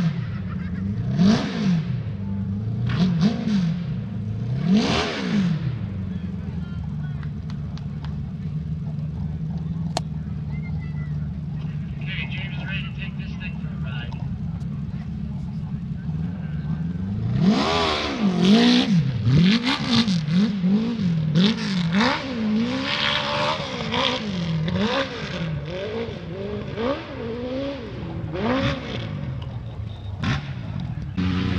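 Dirt bike engine revving. Three throttle blips come in the first few seconds, then the engine drones steadily. From just past the middle there is a long run of quick rising and falling revs as the throttle is worked on and off.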